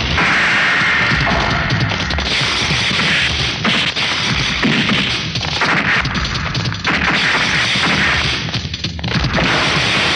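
Film fight-scene sound effects: a rapid run of punch whacks, crashes and whooshes, mixed over a loud action background score.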